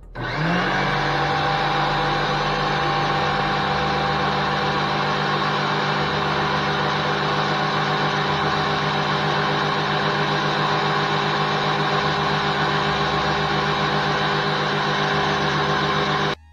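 Oster 12-speed blender base driving a food-processor bowl, grinding warmed almonds and salt into almond butter. The motor spins up with a short rising whine just after the start, then runs steadily.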